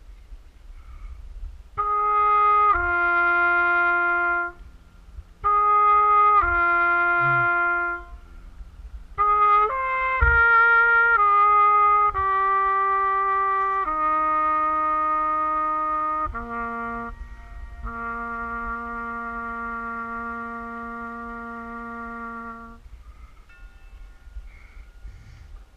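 A trumpet played right at the camera on its bell: two short phrases of two falling notes, then a quick run of notes, then long notes stepping down in pitch, the last one held about five seconds.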